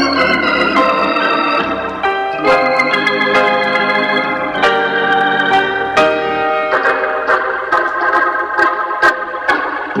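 Organ music from a 1960s stereo LP: a smooth, romantic organ arrangement, with held chords changing every second or two and light ticks running through it.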